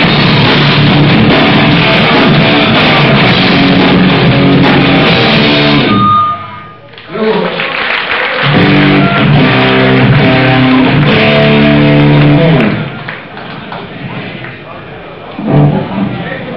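Hardcore punk band playing live, with distorted guitars and drums, recorded loud and distorted. The music breaks off for about a second around six seconds in, comes back with chords, and ends about twelve and a half seconds in, leaving much quieter stage and hall sound.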